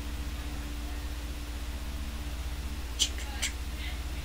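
A steady low hum runs under the pause, with a couple of short, sharp clicks about three seconds in.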